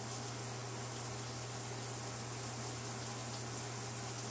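Steady background hiss with a constant low hum underneath, unchanging throughout.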